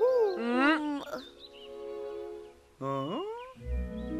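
Cartoon soundtrack: soft background music with held notes, with gliding wordless vocal sounds from the characters in the first second and a rising one about three seconds in.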